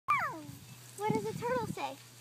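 A young child's high voice: a quick squeal that falls sharply in pitch right at the start, then a few short sung-out syllables about a second in.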